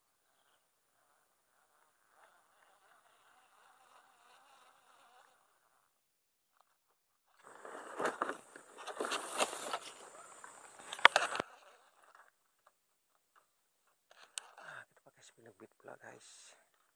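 Close rustling and clicking of fishing gear and a bag being handled, from about seven and a half seconds to eleven and a half, with one sharp click near the end of it. Before that, a faint insect buzz; a few light knocks follow as he takes up the line.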